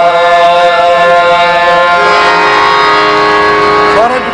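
Qawwali music: a long held note from the lead singer over sustained harmonium-style chords, steady in pitch, with a lower held tone joining about halfway through and no drum strokes.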